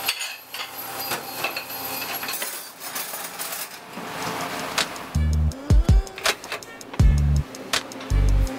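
Dishes and cutlery clinking and knocking as they are sorted in a restaurant dish pit, over the hiss of a dish sprayer. About five seconds in, music with a heavy bass beat comes back in.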